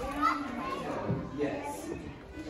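Children's voices chattering, with short loud bursts near the start.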